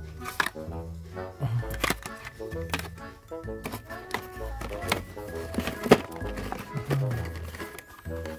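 Background music with a beat and a bass line.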